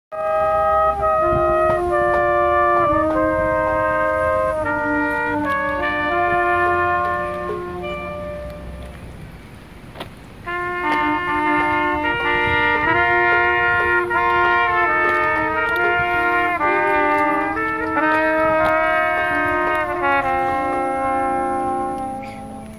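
Small outdoor brass band (trumpets, trombones and a large low brass horn, with a drum) playing a tune in harmony. The playing drops away quieter about eight to ten seconds in, comes back in loudly about ten and a half seconds in, and is winding down on held notes at the end.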